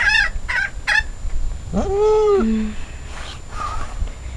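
A few short high chirps, then one held animal call about two seconds in that rises sharply, holds a steady note and drops to a lower pitch at its end.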